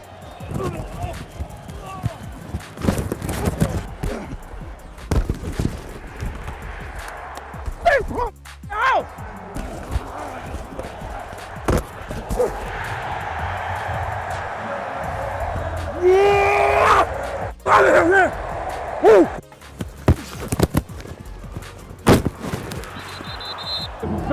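American-football game sound from on the field: sharp knocks of pads and helmets colliding, men shouting, and a crowd noise that swells in the middle, with background music underneath. A sigh and a groan come near the end.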